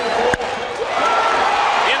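A single sharp crack of a wooden bat meeting a pitched baseball about a third of a second in. From about a second in, the stadium crowd's noise swells.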